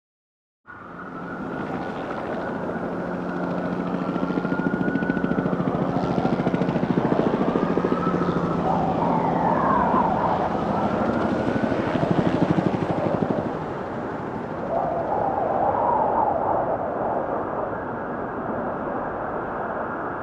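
City ambience: a steady rumble of traffic with distant sirens wailing, their pitch slowly rising and falling and overlapping. It starts abruptly about a second in and swells in the middle.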